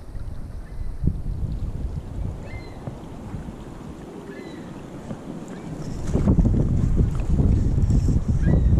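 Wind buffeting the microphone over the rush of a shallow creek, growing louder about six seconds in.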